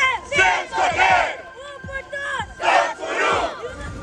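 A group of scouts shouting a cheer together, many voices at once in three loud bursts, the longest about three seconds in.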